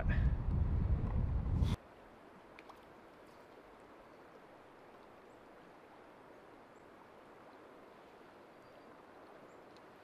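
Wind buffeting the microphone over rushing creek water, cutting off abruptly just under two seconds in. After that, a faint, steady wash of flowing stream water.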